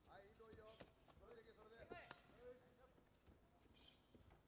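Faint shouting voices over a few dull thuds of punches landing in a full-contact karate exchange.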